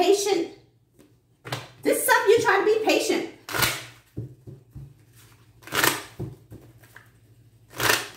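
Playing cards being handled and shuffled on a table, three short swishes about two seconds apart. A voice talks briefly before the first of them.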